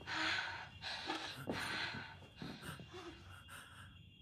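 A person gasping and breathing hard in fright: a run of sharp, ragged breaths, loudest in the first two seconds, with a few short faint whimpers.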